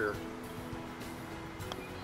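A putter striking a golf ball once, a light click about three-quarters of the way in, over soft steady background music.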